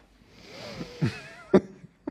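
A person coughing, with a short sharp burst about one and a half seconds in as the loudest moment.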